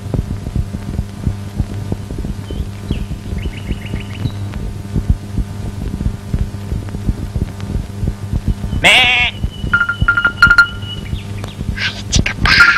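A single loud, wavering bleat from a farm animal about nine seconds in, over the steady hum and crackle of an old film soundtrack, with a few faint short chirps earlier.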